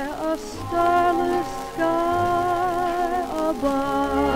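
1944 Decca 78 rpm record of a dance orchestra playing a slow fox trot: the band holds sustained chords between sung phrases, moving to a new chord about every second or so.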